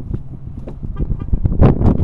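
Pickup truck door being opened: a couple of sharp latch clicks near the end, over a low rumble of wind and handling on the microphone.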